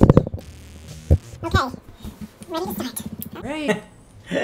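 A woman's speech, with a short low thump at the very start that is the loudest sound.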